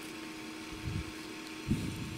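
Hands pressing a strip of adhesive tape down onto a small solar panel, giving two soft, dull knocks, about a second in and again near the end, over a steady electrical hum.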